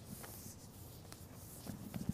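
Faint rustling and shuffling of people moving in a quiet room, with a few soft clicks and knocks near the end.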